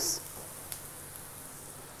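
Sliced onions frying in oil in a pan: a faint, steady sizzle, with one light click a third of the way in.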